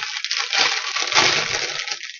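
Packaging rustling and crinkling as items are rummaged out of a bag, a continuous crackly noise.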